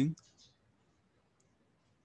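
The tail of a man's spoken word right at the start, then near silence with a few faint clicks.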